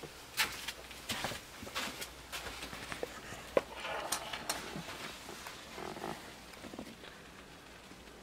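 Camera handling noise and footsteps as a handheld camera is picked up and carried through a motorhome interior: a run of light knocks and clicks with a few short creaks, quieter over the last few seconds.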